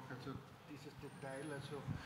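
Faint, brief bits of speech over a low room hum: a voice too far from the microphone to be picked up clearly.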